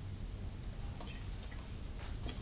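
Faint, irregular small ticks or clicks over a low steady background hum.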